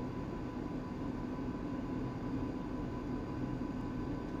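Steady background hum and hiss with a faint high whine and no distinct events: room noise.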